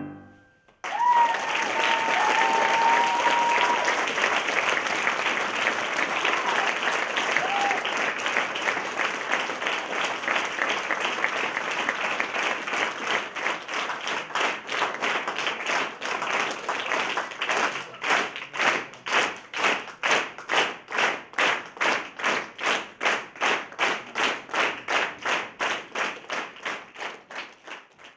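Audience applauding; a long high call rings out over the clapping near the start. From about halfway the clapping falls into a rhythmic unison beat, about three claps a second, then cuts off suddenly.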